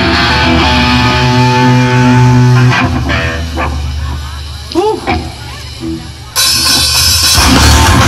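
Hardcore metal band playing live: held guitar notes ring for about three seconds, then a short quieter gap with a few voices, and the full band comes back in loud with guitars and drums about six seconds in.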